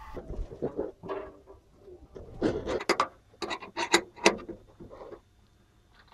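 Socket wrench and extension scraping and clinking against the generator's sheet-metal housing while the fan-shroud bolts are worked loose. A run of sharp, irregular clicks comes in the middle.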